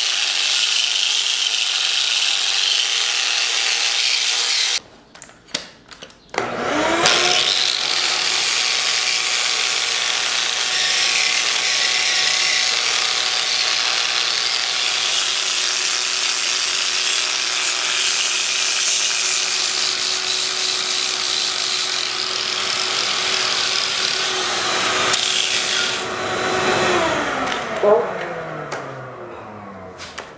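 Angle grinder with a coarse flap wheel grinding a hollow into the end grain of a freshly cut, wet log. The grinding breaks off about five seconds in and the grinder spins back up with a rising whine. Near the end it is switched off and winds down with a falling whine.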